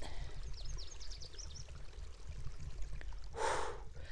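Water trickling from a small mountain stream, with a quick run of high, falling chirps from a bird in the first couple of seconds. Near the end comes a short, breathy exhale of relief, "whew".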